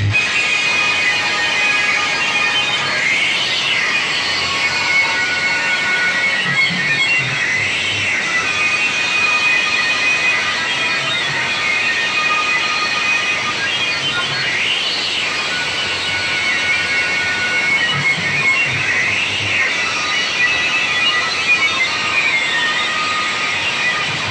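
Very loud music blasting from stacked DJ loudspeaker cabinets, harsh and thin with most of its sound in the mids and little bass. A few rising-and-falling sweeping tones run through it.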